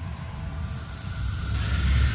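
Cinematic sound effect: a deep rumble that swells near the end, with a rising whooshing hiss from about a second and a half in.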